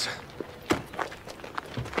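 Irregular footsteps and scuffing on a dirt road as two men carry someone, with a few short knocks; the sharpest knock comes a little under a second in.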